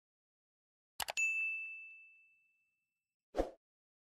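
Subscribe-button animation sound effects: a quick double mouse click about a second in, followed at once by a bright notification-bell ding that rings out and fades over about a second and a half. A short, dull thump follows near the end.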